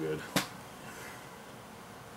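A single sharp click about a third of a second in, followed by low room hiss.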